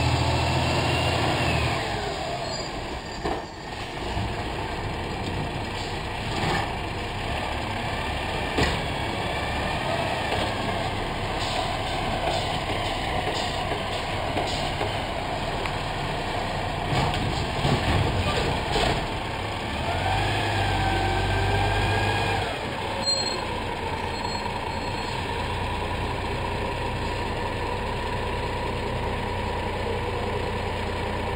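Garbage truck's diesel engine running as the truck approaches and draws up, with a whine that rises and falls near the start and again about twenty seconds in. A few sharp clanks are mixed in.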